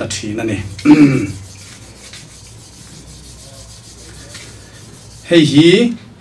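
Violin bow hair being rubbed with a cake of rosin: a faint, steady scratchy rubbing, with a few spoken words at the start and near the end.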